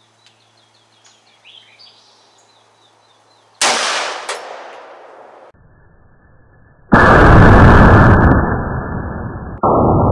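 A single .50 AE pistol shot, a sharp crack about three and a half seconds in with its echo trailing off over a couple of seconds. It is followed by slowed-down replay audio of the shot, a long, loud, muffled rumble.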